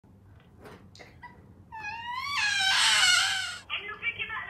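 A girl crying: a few faint sniffles, then a long wailing sob that rises in pitch, swells to its loudest about three seconds in and falls away before breaking off.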